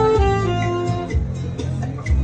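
Instrumental music: a saxophone melody over a backing track with bass and plucked guitar. The melody's held notes end about two-thirds of a second in, leaving the guitar and bass accompaniment.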